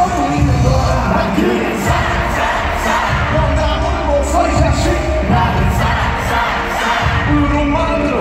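Live pop concert sound in an arena: a male singer's vocal over a bass-heavy backing track played loud through the PA, with the crowd cheering.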